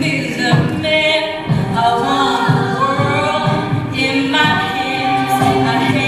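A cappella group singing live: layered sustained backing voices under a lead voice, with a steady low beat about once a second and no instruments.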